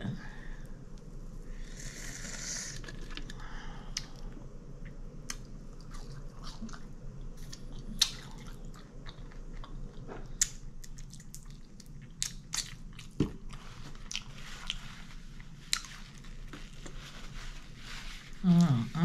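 Close-up chewing of crispy fried chicken, wet mouth sounds broken by many short crunches and clicks of the breading, with a denser crunchy stretch about two seconds in. A steady low hum runs underneath.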